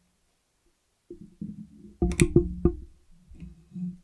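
Background music with plucked, guitar-like notes starting about a second in, with a few sharp clicks around the middle.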